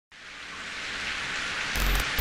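Heavy rain fading in from silence, a steady hiss that grows louder, with a deep boom of thunder coming in near the end.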